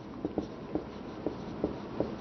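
Marker pen writing on a whiteboard: about five short squeaks and taps of the felt tip as a word is written.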